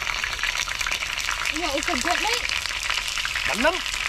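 Chicken wings frying in hot oil in a pan on a portable gas stove: a steady crackling sizzle with dense popping of spattering fat, which the cook puts down to rainwater getting into the oil.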